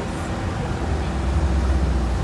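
Roadside street noise: a steady low rumble that grows a little stronger about half a second in.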